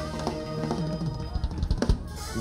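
Church worship band playing softly: held organ chords that thin out, under several scattered drum hits.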